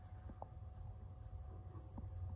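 Faint scratchy rattle of dried seasoning being shaken from a spice jar onto carrot sticks in a stainless steel bowl, over a low steady hum.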